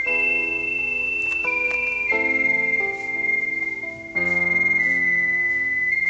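Slow instrumental background score: a high melody of long held notes stepping downward over sustained chords, with a new, deeper chord coming in about four seconds in.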